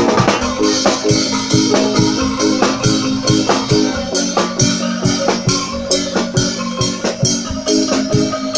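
Bamboo street ensemble playing a dangdut koplo tune: bamboo xylophones struck with mallets carry the melody over a drum kit keeping a steady fast beat.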